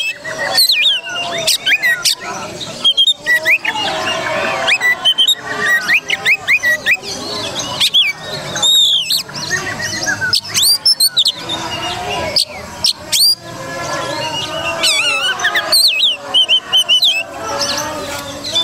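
Oriental magpie-robin singing a long, varied song of clear whistles, rising and falling notes and quick chattering phrases, with hardly a pause.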